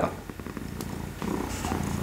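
Domestic cat purring steadily, a fast low rumble heard in a pause between sentences.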